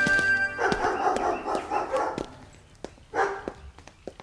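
Background music cuts off about half a second in, followed by a dog barking for a second or two, then scattered faint street sounds.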